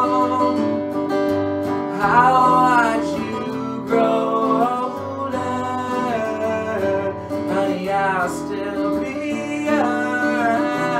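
A man singing solo to his own acoustic guitar.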